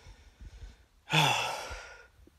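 A man's sigh: one long breathy exhale about a second in, starting with a low voice sound that drops in pitch and trailing off into breath.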